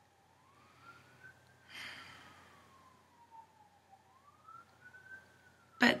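Faint emergency-vehicle siren wailing, its pitch slowly rising and falling about every four seconds.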